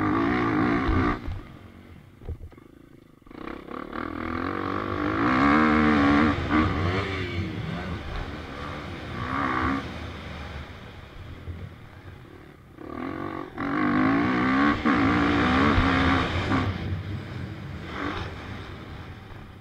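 KTM EXC-F 250 four-stroke single-cylinder engine heard from the bike while riding. It is opened up hard in long pulls, around 4 to 7 s in and again from about 13 to 17 s, with the pitch climbing and falling through each one. The engine eases off to a lower, quieter note between the pulls.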